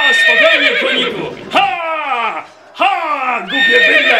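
Horse whinnying several times in a row, each call wavering and falling in pitch.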